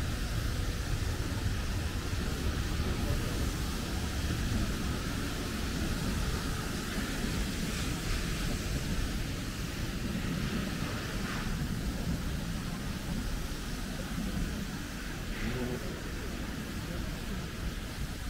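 Steady city street ambience: a continuous low traffic rumble with hiss, no single event standing out.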